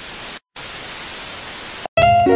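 Television static sound effect: a steady hiss of white noise in two stretches, broken by a brief silence about half a second in and cutting off just before the end.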